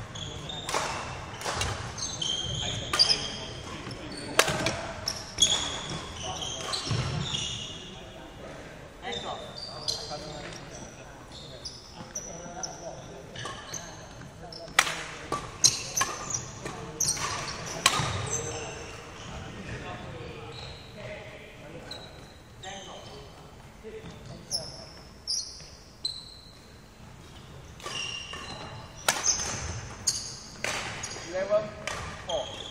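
Badminton rally in a sports hall: sharp racket strikes on the shuttlecock every second or two, with shoes squeaking and thudding on the wooden court floor, all echoing in the hall.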